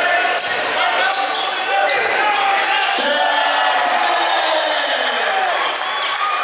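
Basketball being dribbled on a hardwood gym court, with a string of sharp bounces over the voices of spectators in the hall.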